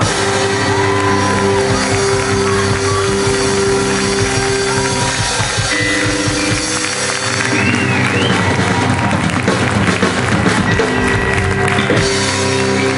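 Live rock band letting long sustained chords ring out at the end of a song, with no singing. The audience starts cheering and applauding over it about halfway through.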